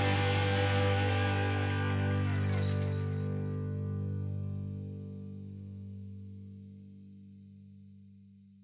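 Closing music: a final distorted electric guitar chord, struck just before, ringing on and slowly fading out.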